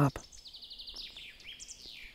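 A songbird singing in the woods: a quick run of repeated high notes and trills that ends in a falling note, well below the level of the nearby voice. The tail of a man's spoken word is heard at the very start.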